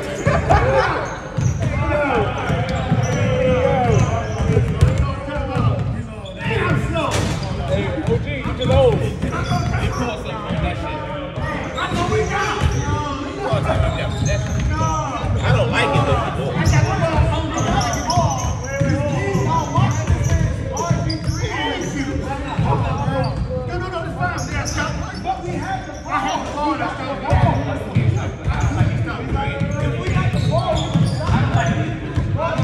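Basketballs bouncing on a hardwood gym floor, several at once, echoing in a large hall, with players' voices mixed in.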